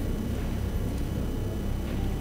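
Steady low rumble with a haze of noise over it: the ambient feed of a large room just switched on.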